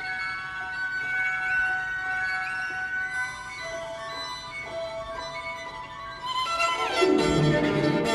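Solo violin playing high sustained notes over a light, bell-like celesta accompaniment. About six to seven seconds in, the orchestra enters louder with low strings.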